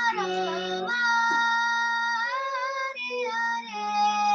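A girl singing to her own harmonium accompaniment: the harmonium's reeds hold steady chords that change about every second, under her voice's gliding melody.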